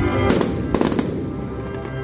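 Aerial fireworks bursting, two clusters of bangs and crackle in the first second, over the show's orchestral music soundtrack.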